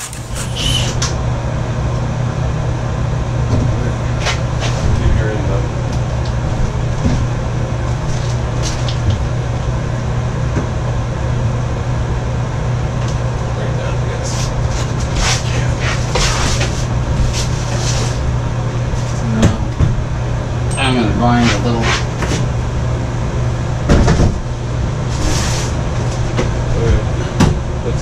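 A bathtub being lowered and shifted into its alcove onto a mortar bed, knocking and thumping against the framing and floor several times over a steady low hum.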